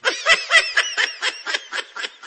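High-pitched laughter: quick snickering giggles, several a second, starting suddenly.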